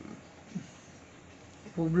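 A pause in a man's talk: quiet room tone with two short low vocal sounds, near the start and about half a second in, before he starts speaking again near the end.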